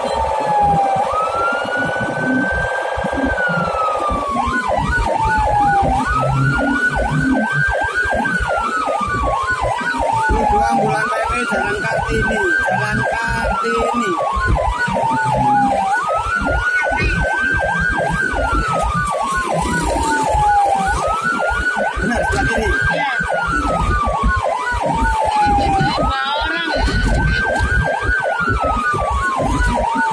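Ambulance siren wailing from the responding vehicle: each cycle rises quickly, holds, then falls slowly, repeating about every five seconds, with a fast pulsing tone layered over it from about four seconds in. A steady multi-note tone sounds under the siren for the first four seconds, with engine and road rumble throughout.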